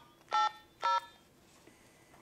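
Handheld radio sending DTMF keypad tones: two short dual-tone beeps about half a second apart, right after another ends, keying in a command to an AllStar node.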